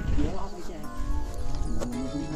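Background music, with a voice over it.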